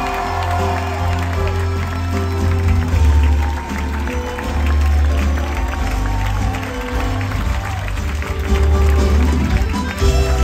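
Live musical-theatre song at a curtain call: singers over a band with a heavy bass line, while the audience applauds.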